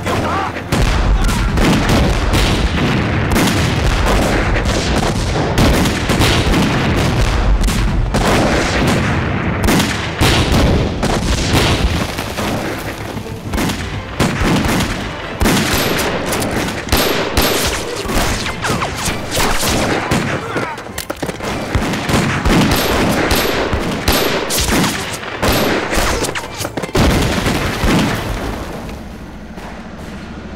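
Battle gunfire, many rifles and automatic weapons firing rapidly and overlapping, with heavy explosion booms in the first several seconds. The firing thins out near the end.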